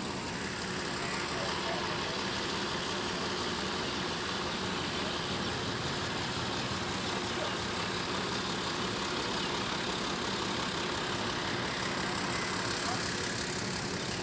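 Diesel engine idling steadily.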